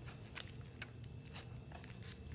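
Faint, scattered crackles of a foil trading-card booster-pack wrapper being handled and worked at while it is opened, about half a dozen separate crinkles.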